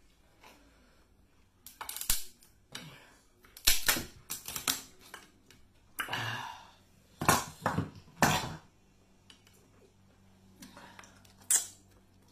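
Close-up eating sounds of a seafood boil: snow crab shells cracking and snapping, with chewing and mouth noises, in a series of sharp crackling bursts with short quiet gaps between.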